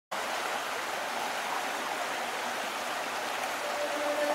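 A steady, even rushing hiss like running water. A held musical tone fades in near the end as the song starts.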